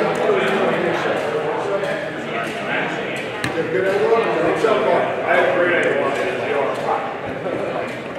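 Indistinct chatter of several voices echoing in a large hall, with scattered light clicks and knocks.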